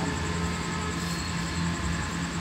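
Steady low hum and hiss of room noise carried through a public-address system, with no voice.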